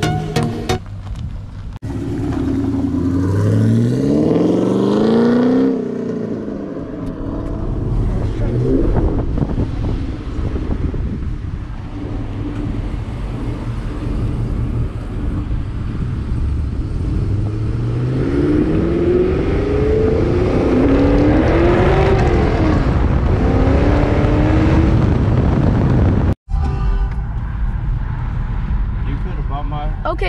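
Pontiac G8 sedan's engine accelerating hard twice. Each time the engine pitch rises and steps up through gear changes, over steady road and engine noise.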